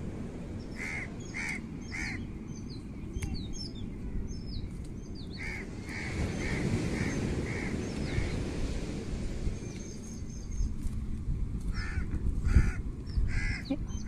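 Crows cawing in runs of short calls, several in a row about twice a second, with small birds chirping and wind rumbling on the microphone. A low thump near the end.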